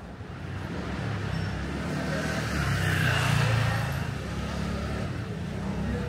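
A car passing by on a city street: its sound swells to a peak a little past halfway and then fades, over a steady low traffic rumble.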